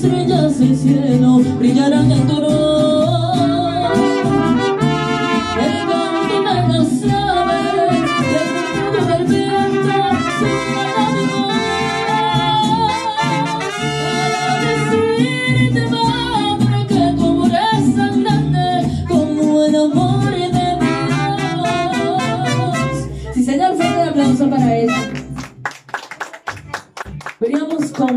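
Live mariachi band playing: trumpets over strummed guitars and a singer. The music stops about three seconds before the end, followed by a short spell of scattered clapping.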